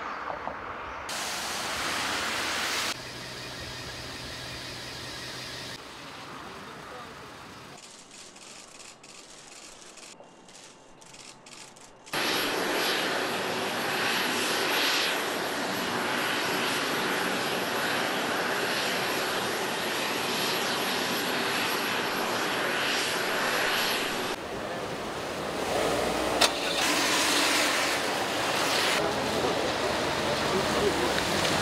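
Several outdoor ambiences follow one another with sudden cuts. Through the middle comes a loud, steady noise with a thin high whine, typical of a jet airliner's engines running on the apron, with voices over it. Near the end there is street noise with vehicles and one sharp click.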